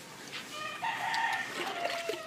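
A rooster crowing: one drawn-out call that starts a little under a second in.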